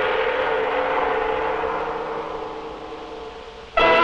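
A gong struck once in the orchestral score. Its crash rings on and slowly dies away over about three and a half seconds, and brass-led music breaks in again just before the end.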